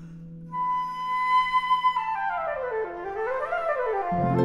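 Solo concert flute holds a high note, then plays quick stepwise runs down, back up and down again. The last of a low chord dies away under the opening.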